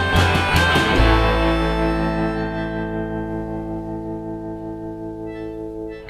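Small live band with electric guitar, upright bass and drums playing the song's last beats, then a final chord struck about a second in that rings on and slowly fades out.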